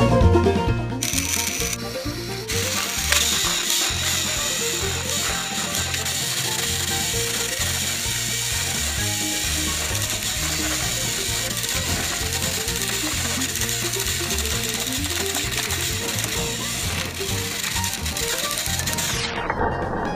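Battery-powered TrackMaster toy engines' small electric motors and plastic gearboxes whirring and grinding as the coupled engines strain against each other on plastic track. The grinding starts about a second in and stops shortly before the end, with background music underneath.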